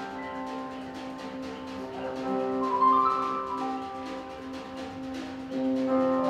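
A high school jazz big band playing, with saxophones, brass, piano and drums. The horns hold sustained chords that swell about two to three seconds in and again near the end.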